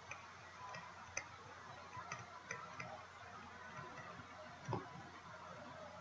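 Faint, irregular light clicks and taps of a digital stylus on its writing surface while words are handwritten, with a slightly stronger tap just before the end.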